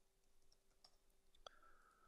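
Near silence with a few faint computer keyboard clicks as a word is typed.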